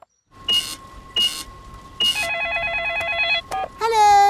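Cartoon telephone call going through: a steady hum on the line with a few short beeps, then a fast warbling electronic ring for about a second before the call is answered.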